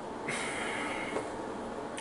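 A man breathing out through his nose in one long, steady breath, starting about a third of a second in, over steady room hiss.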